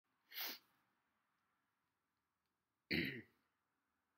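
A man gives two short, sharp bursts from the nose and throat, about two and a half seconds apart, the second louder.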